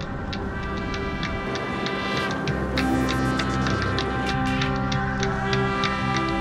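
Background music with a steady beat and held tones; a deeper bass part comes in about halfway through.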